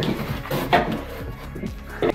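Background music, with a few clunks and rattles of electric mountainboard motors and trucks being handled in a cardboard box; the loudest clunk comes about three quarters of a second in.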